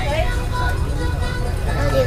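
A steady low rumble of outdoor background noise, with faint voices talking in the background that come up briefly near the end.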